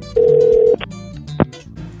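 A telephone tone sounds once, steady and loud, for about half a second, then two short sharp clicks follow, over background music: the start of a phone call to the boss.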